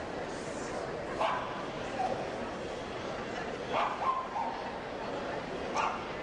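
Terriers giving short, sharp yapping barks, about five of them scattered through, over a steady background murmur of voices.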